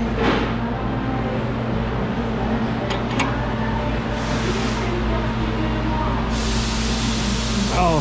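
Open-end wrench working on a tie-rod jam nut that is held with thread locker, giving a few short metallic clicks over a steady shop hum. A hiss sets in about six seconds in.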